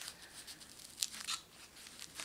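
Hook-and-loop strap of a wrist blood pressure monitor cuff being wrapped and pressed shut around a wrist: faint, short scratchy rasps, the loudest a little after a second in.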